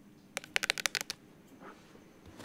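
A hand making a quick run of about ten sharp little clicks in under a second, starting about a third of a second in.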